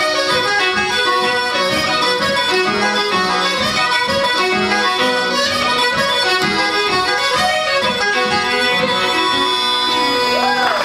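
Irish traditional dance tune played together on fiddle, uilleann pipes and button accordion, in a steady, even rhythm.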